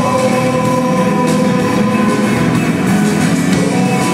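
Live rock band playing in a large hall, heard from far back in the audience, with long held notes sustained over the band.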